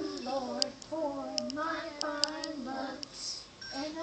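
Young children singing a Christian children's song together, held sung notes with a short break between lines near the end.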